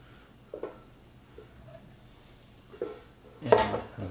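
A few faint knocks as spaghetti squash halves are set down into a plastic air fryer basket, spread across a few seconds of quiet room tone.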